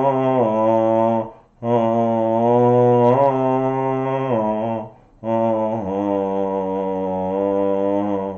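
A man chanting long, low, steady held notes in a mantra style. Each note lasts about three seconds, with a short breath about a second and a half in and another about five seconds in.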